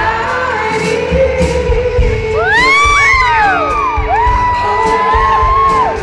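Live band music with acoustic guitar, upright bass and drums playing between sung lines, recorded on a phone microphone. About halfway through, several high voice-like calls swoop up and down in pitch, overlapping, and then a high note is held near the end.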